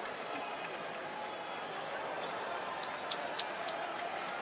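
Steady murmur of a sparse arena crowd, with a few short sharp knocks about three seconds in as the basketball is bounced on the hardwood court during the free-throw routine.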